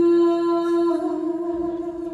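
Women's qosidah group voices holding one long sung note, steady in pitch and slowly fading, as at the close of a phrase.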